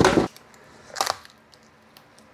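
Two knocks as the freed lithium iron phosphate cell pack and its cut-open case are handled on the workbench: one loud knock at the start, then a softer one about a second later.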